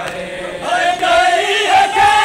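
A group of men chanting a Muharram noha (lament for Imam Hussain) together. The voices swell louder a little way in and hold long notes.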